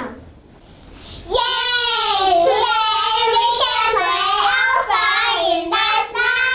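Young children singing a line with long held notes, starting about a second and a half in after a brief pause.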